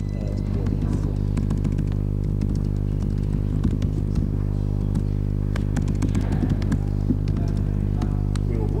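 Keyboard typing, a run of light irregular key clicks, over a loud steady low electrical hum with stacked overtones.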